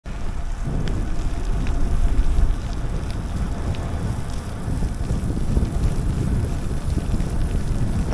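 Wind rumbling over the microphone of a bike-mounted camera while riding in the rain, a steady low noise with a fainter hiss above it and a few faint ticks.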